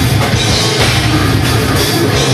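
Death metal band playing live, loud and unbroken: heavily distorted electric guitars over a drum kit with rapid, dense kick drums.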